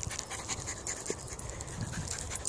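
Dogs panting close by, with a low rumble underneath.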